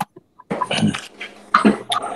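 A person coughing over a video-call line: a rough burst about half a second in and a second, shorter one near the end.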